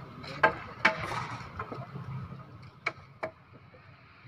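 Sharp 'dak-dok' knocks from workers building a concrete-block safety wall: four strikes in two quick pairs, the first pair early and the second near the end, over a low steady background rumble.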